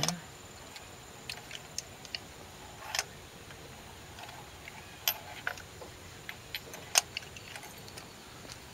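Scattered light metal clicks and clinks, irregular rather than a ratchet's rhythm, as a 16 mm spark plug socket on a ratchet extension knocks about in a spark plug well and is tried on the plug; it does not fit, as the factory plug has a smaller hex.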